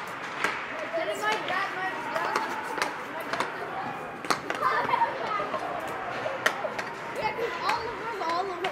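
Ice hockey in play: sharp, scattered clacks of sticks and puck on the ice and boards, over the echoing voices of players and spectators in the rink.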